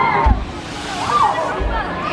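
Background voices of people talking nearby, with two short low bumps on the microphone, one just after the start and one near the end.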